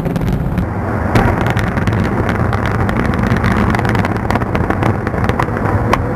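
Bridge demolition charges going off in rapid succession: a dense run of sharp cracks over a steady rumble.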